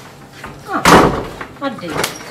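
A door banging shut: one loud slam about a second in, fading quickly.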